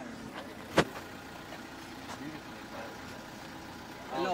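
A car door shutting once, a sharp, loud knock about a second in, over a car engine idling and faint voices.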